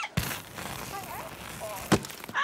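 Cartoon sound effects: a sharp hit just after the start, a rushing noise with a few short squeaky vocal glides from the animated character, and another sharp hit near the end.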